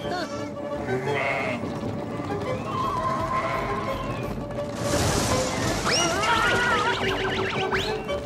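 Cartoon background music with sheep bleating. About six seconds in, a flurry of short overlapping calls from a flock of birds starts and runs almost to the end.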